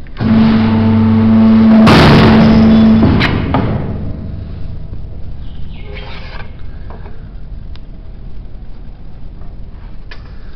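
A single-phase hydraulic sheet-metal guillotine's pump motor starts with a loud steady hum. About two seconds in, the blade shears through a sheet of stainless steel in a brief harsh burst, and the pump stops about three seconds in. A few faint knocks follow.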